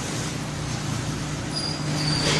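Vertical form-fill-seal packaging machine line running with a steady low hum and an even mechanical noise; a faint high whine comes in near the end.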